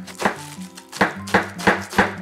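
Chef's knife shredding spring cabbage into fine strips on a cutting board: about five cuts, unevenly spaced, with a pause of most of a second near the start.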